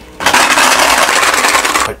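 Hard candy drops rattling inside a small metal drops tin as it is shaken, a dense, rapid rattle lasting about a second and a half.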